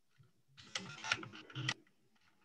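Computer keyboard typing: a quick run of keystrokes starting about half a second in and lasting just over a second, with a couple of sharper clicks near the end.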